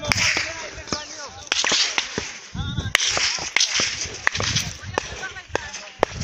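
A series of sharp, irregular cracks, about a dozen, the loudest about three seconds in, over steady rustling and wind noise. Brief shouts break in between them.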